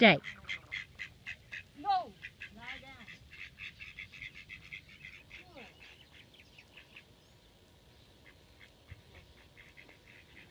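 Ducks quacking in a fast run of short, repeated calls that fade away after about seven seconds.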